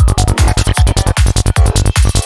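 Psytrance at 152 bpm: a steady four-on-the-floor kick drum with a rolling bassline pulsing between the kicks, under layered synth lines.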